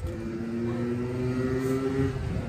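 A motor running with a steady hum over wind and road rumble while riding. The hum breaks off just before the end.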